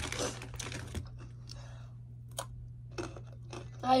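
A foil chip bag rustling for about a second as a hand reaches into it, followed by scattered sharp crunches of Takis rolled tortilla chips being chewed.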